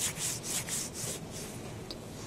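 A few short, soft rustling strokes.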